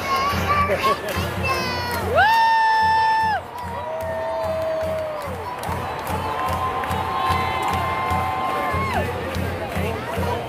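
A small child's long, drawn-out shouts, the first leaping sharply up to a high held cry about two seconds in and breaking off suddenly, the next lower and sinking at its end. Behind them are a stadium crowd and a marching band playing over a steady drum beat.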